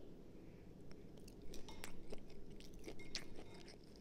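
Faint chewing of a piece of cooked wild Argentinian red shrimp: soft, irregular mouth clicks.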